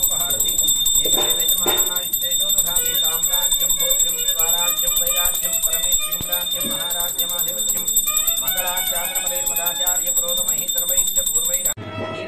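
A bell rung rapidly and continuously during the aarti flame offering, giving a steady high ring over voices. It stops abruptly near the end.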